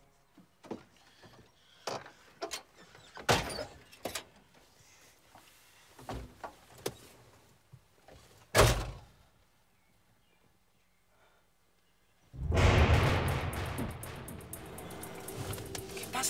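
A pickup truck's doors and cab knocking and thudding as people climb in, with the loudest slam a little past the middle. After a few seconds of near quiet, loud music swells in.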